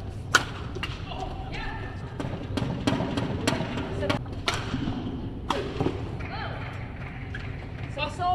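Badminton smash: one sharp crack of racket on shuttlecock about a third of a second in, the loudest sound. Scattered lighter knocks follow, with voices in the hall.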